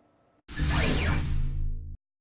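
A broadcast graphics transition sting: a whoosh sound effect over a low, held musical chord. It starts about half a second in, lasts about a second and a half, and cuts off abruptly.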